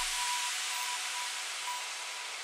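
A high white-noise wash in an electronic dance track, slowly fading, with a few faint short tone blips above it. The bass drops out just at the start.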